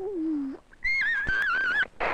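Film sound effect of a car skidding. A low drone breaks off about half a second in, then a high, wavering tyre screech lasts about a second, falling slightly in pitch, just before a crash.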